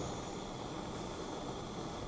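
Room exhaust fan running: a steady, even rushing noise.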